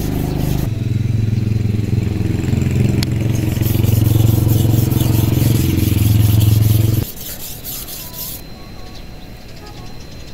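A large, thick-bladed Hmong knife (dao mèo) is stroked back and forth across a natural whetstone with a rhythmic scraping, honing only the edge because the blade is too thick to grind from the spine. A steady engine drone runs underneath, louder than the scraping, and cuts off suddenly about seven seconds in.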